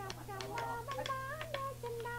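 A voice making short sounds that glide in pitch, mixed with several sharp clicks, over a steady low hum from the recording.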